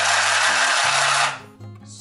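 Battery handheld stitch machine running and sewing a single-thread chain stitch through fabric, with a loud steady buzz that cuts off about a second and a half in.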